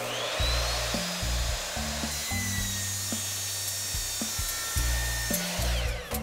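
Electric miter saw cutting PVC pipe. The motor whine rises as the blade spins up, holds through the cut, and falls away near the end. Background music plays underneath.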